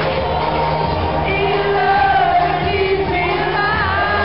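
Live pop-dance music played loud through a PA, a woman's voice singing over a heavy bass line.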